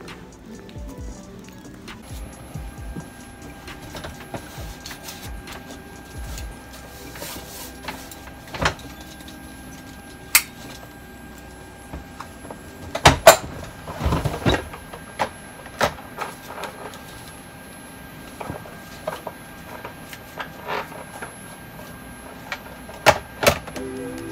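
Clicks and knocks of airliner galley latches, panels and compartment doors being worked, scattered and loudest about halfway through, over a steady electrical hum.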